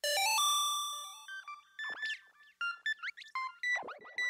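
Electronic logo-intro jingle: a bright chime-like chord that starts suddenly and fades over about a second and a half, followed by quick chirping, sliding electronic blips.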